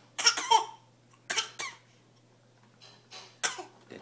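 A baby's short, breathy vocal bursts, coming in three groups: a loud pair near the start, another pair about a second later, and a softer cluster near the end.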